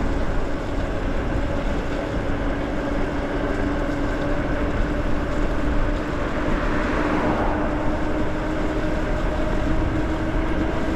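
Electric bike riding at speed: wind rushing over the microphone with tyre noise on wet pavement, and a faint motor whine that climbs slowly in pitch as the bike gains speed.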